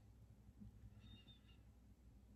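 Near silence: room tone, with a faint high-pitched tone for about half a second a second in.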